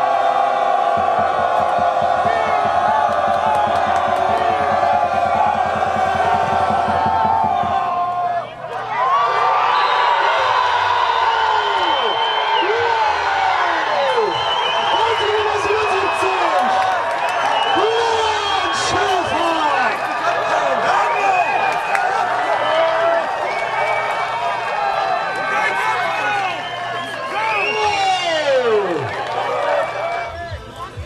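Crowd of spectators at an American football game, first a steady din of voices for about eight seconds, then breaking into cheering and shouting that carries on: the reaction to a successful field goal.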